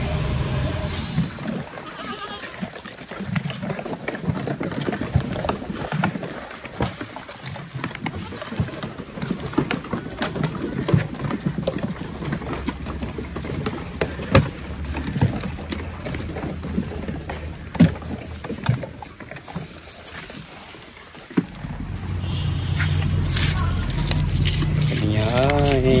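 A goat herd moving about and feeding, heard as scattered sharp knocks and clatter. About twenty seconds in, a low steady rumble comes in.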